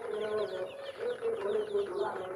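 A flock of young chicks peeping, many short high falling peeps overlapping in quick succession, with lower drawn-out calls from the birds beneath them.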